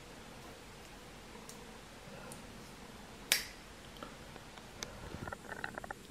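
Folding steel multi-tool being worked by hand: a few light metal clicks, one sharp snap about three seconds in, then a quick run of small clicks and rattles near the end as its folding tools are moved.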